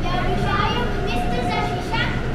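Children's voices speaking over general crowd chatter and a steady hum in a large indoor hall.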